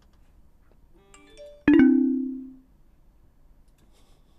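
Electronic chime sound effect played from the streaming mixer: a quick run of soft rising notes, then a loud bell-like chime that rings out and fades within about a second.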